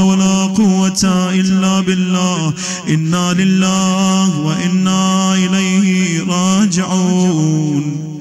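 A solo male voice chanting a mournful Shia lament (a majlis recitation for Imam Hussain), holding long, steady notes with ornamented turns and brief dips in pitch.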